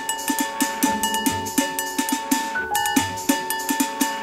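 Live music: metal pots and plastic buckets struck in a quick, steady percussion rhythm, over a held high note and a deep beat about once a second.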